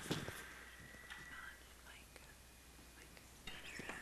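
Faint murmured talk and whispering, with a few small clicks just after the start and the voices growing a little louder near the end.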